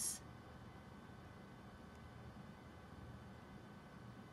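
Faint room tone: a low steady hum with a few faint high steady tones.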